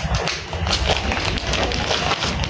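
Handling noise from printed cloth being moved about close to the microphone: rustling with many light taps and soft thuds.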